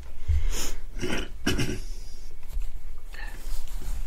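A person's audible breaths and short throat noises: several brief separate bursts with quieter stretches between.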